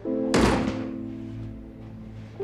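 An apartment front door shutting with a single thud about a third of a second in, over background music with sustained notes.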